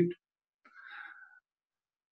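The last syllable of a man's speech, then a faint breath of under a second, followed by dead silence.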